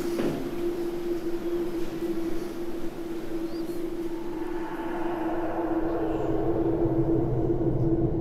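Elevator car running: a steady single-tone hum over a rushing rumble, with a deeper hum joining about six seconds in.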